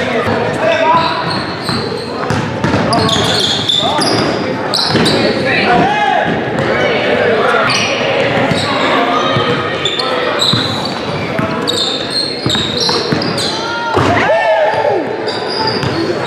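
Basketball game in a gym: a ball bouncing on the hardwood floor, sneakers squeaking in short bursts as players cut and run, and players' voices and chatter, all echoing in the large hall.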